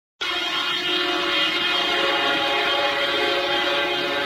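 A sustained drone of several steady held tones, starting abruptly a moment in and holding at an even level: the instrumental opening of the music.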